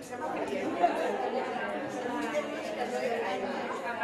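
Chatter of many people talking at once: a roomful of students discussing in small groups, their voices overlapping.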